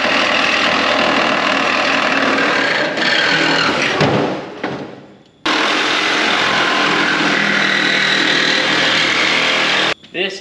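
Power saw running under load, cutting apart the car body. About four seconds in it winds down with falling pitch and stops. A second and a half later it starts again abruptly at full speed, then cuts off sharply at the end.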